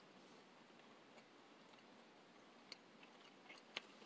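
Near silence with a few faint clicks in the last second or so: a person quietly chewing a thin, crisp Pop-Tarts Crisps bar with the mouth closed.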